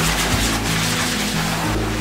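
Dog grooming dryer blowing air, a steady hiss, over background music.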